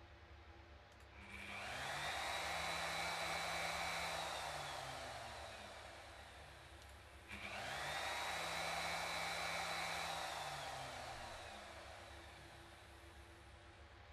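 Bosch GOF 1600 / MRC23EVS router motor, worked by a home-made external toggle switch, is started twice. Each time it winds up within about a second to a steady whine, runs for a couple of seconds, then winds down slowly as it coasts to a stop.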